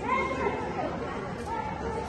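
Indistinct voices and chatter, with a raised voice near the start.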